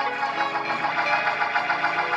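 Instrumental accompaniment holding steady sustained chords between the preacher's sung phrases.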